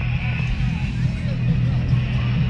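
Car engine running at low speed, a steady low hum heard from inside the cabin as the car creeps along, with faint voices outside.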